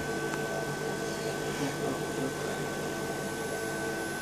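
Steady electrical hum from a home-built IGBT half-bridge inverter and its high-frequency X-ray transformer, several held tones with a thin high whine over them, running evenly.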